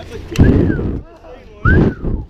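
Two short bursts of low rumbling noise from wind buffeting the camera microphone, the first about half a second in and the second near the end.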